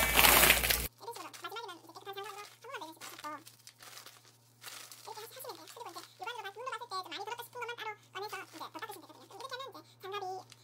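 Dried red chili peppers crinkling and rustling as gloved hands rub them together in a bowl; the sound cuts off suddenly about a second in. After that there is only a faint, high voice-like sound over a low steady hum.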